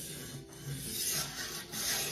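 Sharpening stone on the guide-rod arm of a fixed-angle knife sharpener rubbed along the edge of a large clamped knife blade, in a few long strokes.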